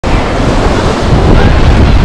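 Strong wind buffeting the microphone with a loud, gusting rumble, over the wash of sea surf below.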